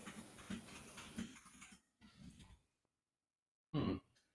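Near silence: faint room tone with a few small clicks, dropping to dead silence partway through, then a brief murmured "hmm" near the end.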